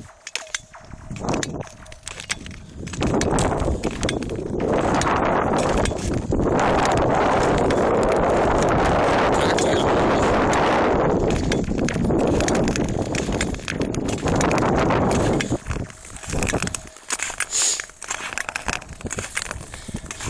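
Steel ice-skate blades gliding and scraping over thin, clear lake ice, with sharp cracks and ticks from the ice as it flexes under the skater: thin 'crackling ice'. A long steady rush from the blades fills the middle stretch, then breaks into separate strokes and clicks near the end.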